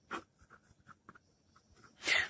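Faint scratching of a pen writing on paper, in short strokes, with a slightly louder brief noise just after the start.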